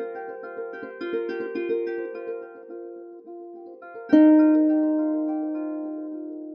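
Harp music: gently plucked notes ringing into one another, then a louder low chord struck about four seconds in that rings on and slowly fades.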